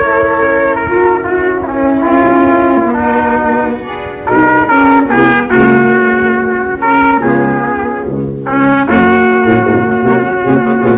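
Brass-toned instrumental music: several instruments hold chords together in a slow melody, the notes changing every half second to a second, with short breaks about four and eight and a half seconds in.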